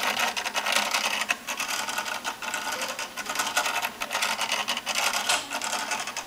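Behringer BCF2000 motorized fader moving up and down on its own as it follows recorded volume automation played back from Reaper: an uneven, continuous motor whir and sliding scrape with many rapid clicks.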